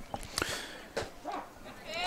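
Faint, distant voices from the ballfield, with a few light clicks, in a lull between commentary.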